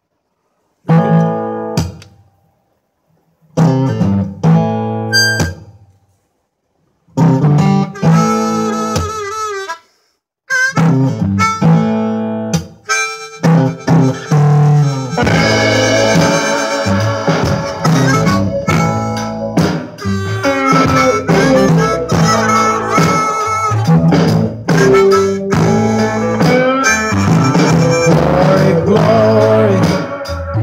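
A blues song playing from stereo speakers with guitar, and a harmonica played live along with it. For the first ten seconds it comes as short phrases broken by silences, then it plays on continuously and fuller from about fifteen seconds in.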